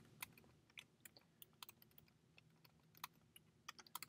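Computer keyboard typing: a quick, irregular run of faint keystrokes as a line of code is typed.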